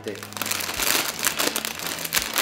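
Foil snack bag of Doritos crinkling continuously as it is handled and turned, a dense run of small crackles.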